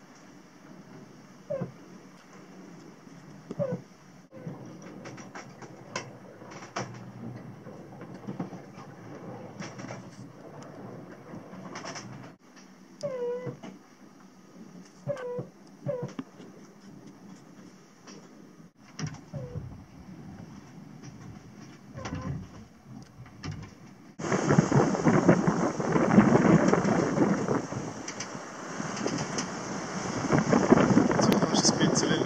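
Inside a sailing yacht's cabin while under way: a low hiss with scattered clicks and short squeaking creaks as the boat works in a gentle sea. About three-quarters through, this gives way abruptly to loud wind noise on the microphone on deck.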